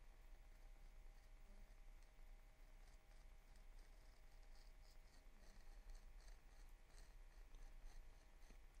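Faint scratching of a craft knife blade drawing through adhesive screentone film on paper, a run of small scrapes and ticks that starts about two and a half seconds in.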